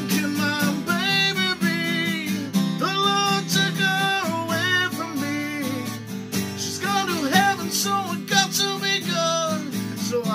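A man singing while strumming a capoed acoustic guitar in a steady rhythm, the voice pausing for about a second and a half midway before coming back in.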